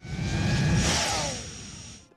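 Whoosh transition sound effect with a deep rumble: it starts abruptly, swells, then fades over the second half, with a faint falling tone as it dies away.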